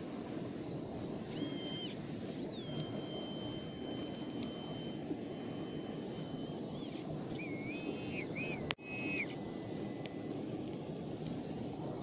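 C-Scope Metadec 2 metal detector giving target tones as it is passed over a dug hole: a short rising beep about a second in, a long steady high tone for about four seconds, then a wavering tone near the end, signalling metal in the soil. A sharp click comes with the wavering tone, over a steady low background rumble.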